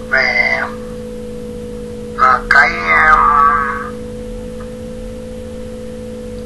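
A voice speaking in two short stretches, at the very start and around the middle, over a steady low hum.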